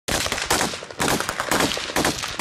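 Gunfire in quick succession, with repeated shots and short bursts typical of automatic rifles in a firefight.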